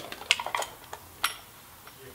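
A handful of light clicks and clinks from a floor pump's hose and head being handled at a bicycle wheel's valve, the sharpest just past a second in.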